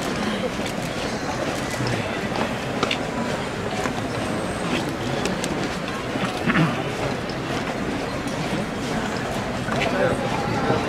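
A large crowd talking at once, a steady mass of voices, with the shuffling footsteps of the bearers carrying a processional float slowly forward.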